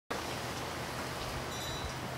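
Steady outdoor background noise with a low hum. Faint, thin high ringing tones come in briefly in the second half.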